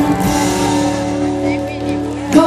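A live pop ballad band holding sustained chords as the song closes, with a female singer's voice gliding briefly about a second and a half in.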